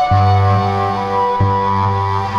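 Solo cello music: low bowed notes that change about every second and a half under sustained higher cello tones layered on a loop station.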